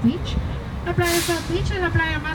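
Open-top double-decker tour bus running with a low rumble, its air brakes giving one short hiss about a second in.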